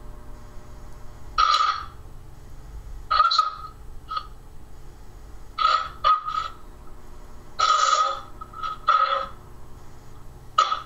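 Ghost box (spirit box) sweeping through radio stations: about nine short, choppy bursts of radio sound at irregular intervals, each under half a second, over a low steady hum.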